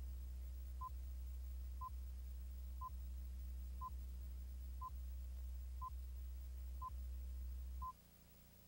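Countdown leader beeps on a commercial's videotape slate: a short mid-pitched beep once a second, over a steady low hum. The beeps and the hum both stop just before the end.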